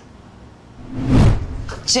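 A single swelling whoosh with a deep rumble underneath, building over about half a second and fading away: an editing transition sound effect at a scene cut. A voice begins speaking just at the end.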